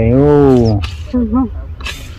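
A woman's voice drawing out one word for nearly a second, its pitch rising then falling, followed by a few short spoken syllables. A low wind rumble on the microphone runs underneath.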